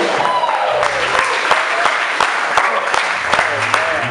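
Audience applauding, with a few voices calling out over the clapping as a live band's song ends.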